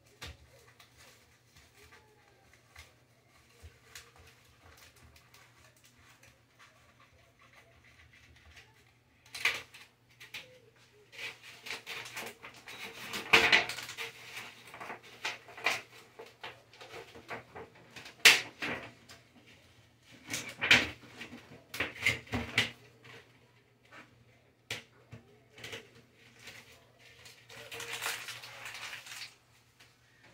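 Kitchen handling sounds: after a quiet first nine seconds, a string of knocks, clicks and clatter as bowls and containers are picked up and set down on a wooden counter, with some rustling near the end.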